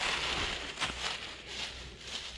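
Dry fallen leaves rustling and crackling as they are scooped and piled by hand, in short irregular crunches.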